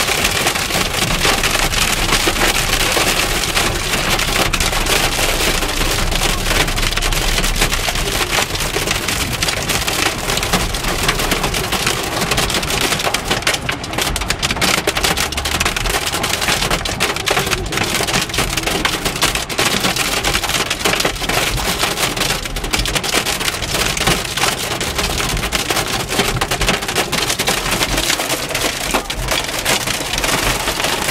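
Heavy rain and hail hitting a car's roof and windscreen, heard from inside the cabin: a loud, unbroken clatter of many small hard hits over a rain hiss.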